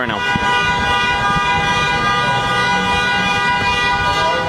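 A vehicle horn held on one steady, multi-note tone for about four seconds, fading out just after it ends, over street traffic noise.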